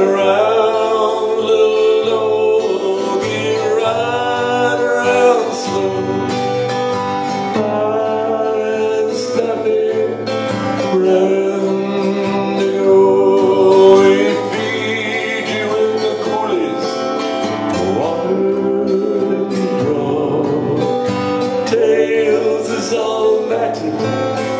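A man singing a cowboy folk song with acoustic guitar accompaniment.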